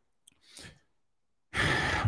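A man sighs, a loud breathy exhale about one and a half seconds in, after a pause of near silence with one faint breath.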